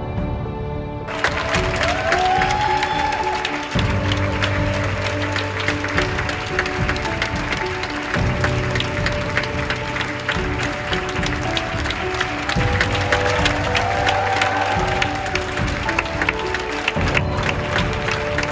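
Theatre audience clapping steadily while music plays, the applause breaking out about a second in and continuing.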